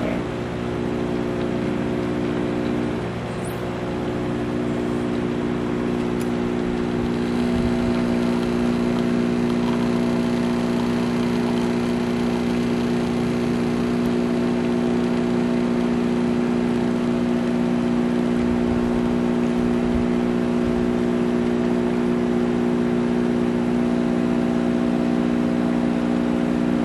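CUPPA personal espresso machine's pump running steadily while it brews a shot of espresso, a continuous even hum that gets a little louder several seconds in.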